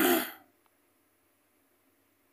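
A man clearing his throat, ending about half a second in, then near silence.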